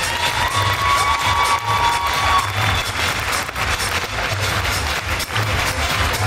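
Background music with a steady beat, under a crowd cheering and applauding in a large hall.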